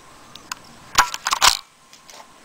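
Hard plastic action figures clacking together: a faint click, then three sharp clacks in quick succession within about half a second.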